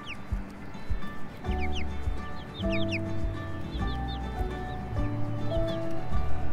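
Background music with held notes and a steady low beat, over a flock of young chickens giving scattered short high calls.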